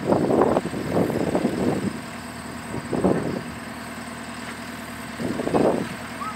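An engine idling steadily, partly covered by rough gusts of wind on the microphone that ease off in the middle and return near the end.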